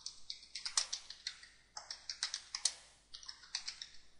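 Typing on a computer keyboard: quick, irregular runs of keystrokes with short pauses between them.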